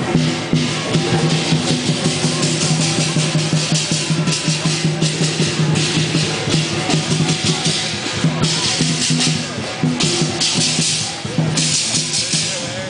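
Parade drumming in a quick beat, with crashing cymbals that come in in stretches, over steady low musical notes.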